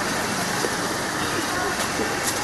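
Steady, even background noise with faint, indistinct voices.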